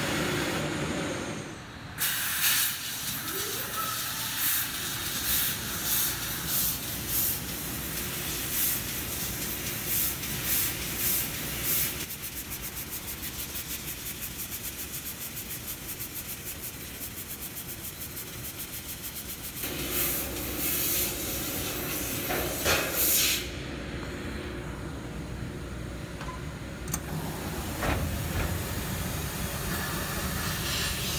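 Fiber laser cutting machine cutting thin stainless steel sheet: a steady hiss from the cutting head's assist-gas jet, surging on and off in many short pulses, with a stretch of fast, even pulsing in the middle.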